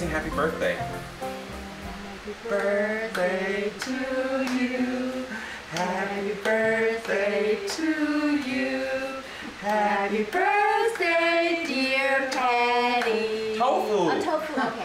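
Singing: a voice carries a melody in held notes that step up and down, with music under it.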